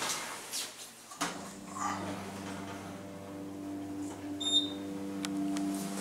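Hydraulic elevator doors sliding shut, then about a second in a click and the hydraulic pump motor starting with a steady hum as the car begins to rise. A brief high beep sounds a little past the middle.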